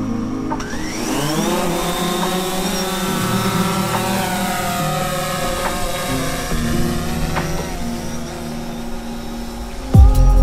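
DJI Phantom quadcopter's motors spinning up for takeoff about half a second in, the whine rising in pitch over about a second, then a steady multi-tone whine with slight wavering as the drone lifts off and climbs away.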